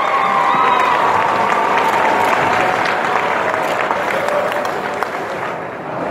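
Audience applauding, with a few voices in the crowd, easing off near the end.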